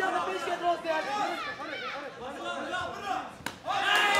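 Several people's voices talking and shouting over one another, with one sharp knock about three and a half seconds in.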